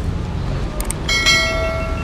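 Subscribe-button animation sound effects: a short mouse click, then a bright bell-like notification ding that rings for about a second and fades, over a steady low rumble.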